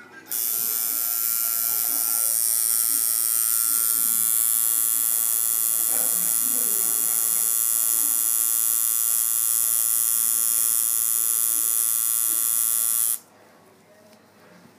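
Coil tattoo machine buzzing steadily as its needle works into the skin of a forearm. It switches on just after the start and cuts off suddenly about a second before the end.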